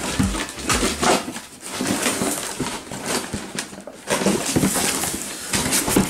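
Plastic wrapping and a cardboard box rustling and crinkling as the box is handled and opened, in irregular bursts.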